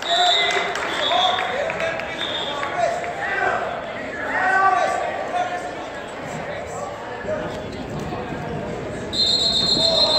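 Referee's whistle in a gym: three short blasts in the first few seconds and a longer, steady blast near the end, over spectators shouting and calling out in a large, echoing hall.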